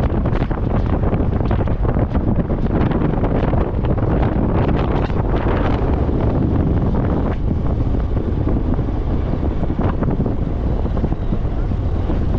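Heavy wind buffeting the microphone of a camera on a moving motorcycle, with the motorcycle and its tyres on the dirt road running underneath as a steady rumble.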